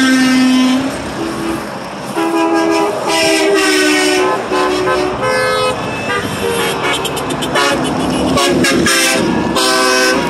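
Passing trucks and cars honking: a long semi-truck air horn blast that ends under a second in, then a string of shorter horn toots at several different pitches, over the rush of highway traffic.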